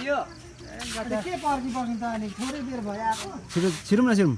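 Speech only: men talking close by.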